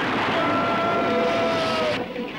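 Film soundtrack sound effect: a dense rushing noise with a held tone that comes in about half a second in and sags slightly in pitch near the end.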